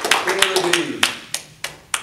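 A few people clapping, with a man's voice over the first half. The applause thins to four last single claps, about a third of a second apart, then stops.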